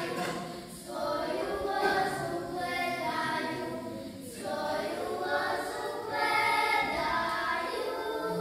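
A small group of children singing a Posavina folk song together, in sustained sung phrases with brief pauses for breath about a second in and again about four seconds in.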